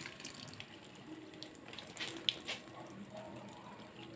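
Faint running water trickling and splashing as potted plants are watered, with a few light clicks about two seconds in.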